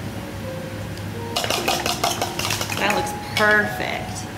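Metal spoon stirring in a mixing bowl, starting about a second and a half in with a quick run of scraping clinks against the bowl's sides.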